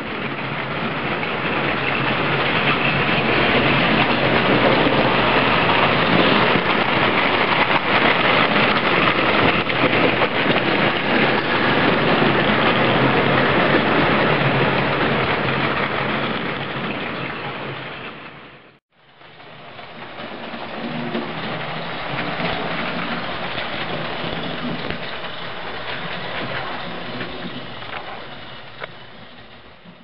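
A model railway train running past close by: the locomotive's motor and the wheels rolling on the rails make a steady rushing noise that swells as it approaches and fades as it goes. The sound drops out about two-thirds of the way through, and a second pass swells up and fades away near the end.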